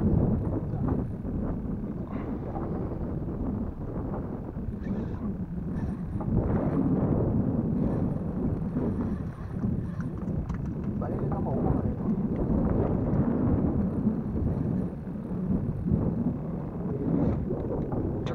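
Steady rumbling wind and water noise on an open-air camera microphone out on choppy sea from a small boat, rising and falling in level, with indistinct muffled voices.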